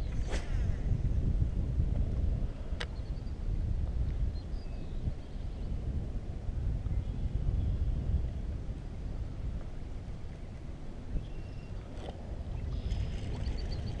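Wind buffeting the microphone over water against a kayak, with a few sharp clicks along the way.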